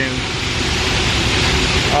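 Steady, loud rushing noise of a mixed-flow grain dryer's big heater fans running.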